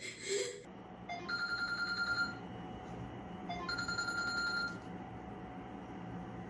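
A mobile phone ringing: two rings of a trilling electronic ringtone, each about a second long, about two and a half seconds apart.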